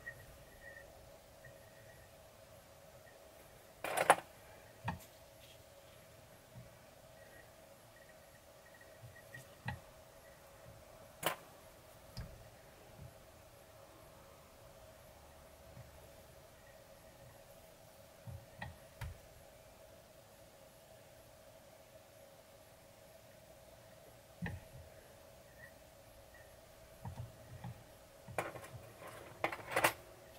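Small clicks and taps from hands and tools working a fly at a fly-tying vise, scattered and sparse, the sharpest about four and eleven seconds in and a cluster near the end, over a faint steady hum.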